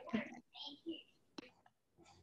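Quiet, low voice murmuring over a video call, with a single sharp click about one and a half seconds in.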